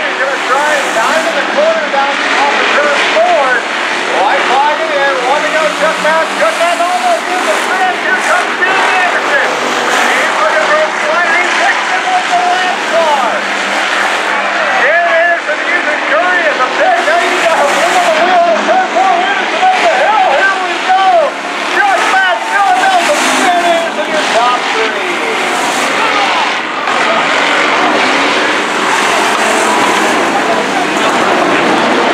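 Several hobby stock race cars' engines racing around a dirt oval, their pitch rising and falling over and over as drivers get on and off the throttle through the turns. The engines of the pack overlap without a break.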